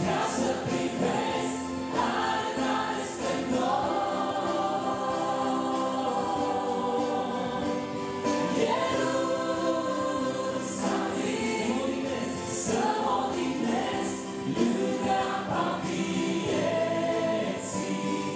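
A woman and a man singing a Romanian Christian song together, with electronic keyboard accompaniment.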